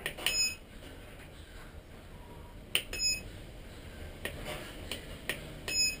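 Turnigy 9X radio transmitter beeping as its menu keys are pressed: three short high beeps a few seconds apart. Light clicks of the buttons come in between.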